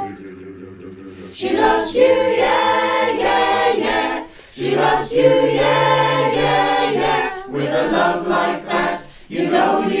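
Mixed-voice a cappella choir singing in four-part harmony, assembled from singers' separate home recordings. It starts softly with low held notes, then the full choir comes in about a second and a half in.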